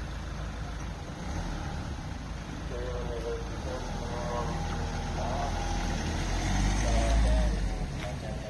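Car engine running at low revs close by, with a low rumble that swells to its loudest about two-thirds of the way in and then fades; people talk faintly in the background.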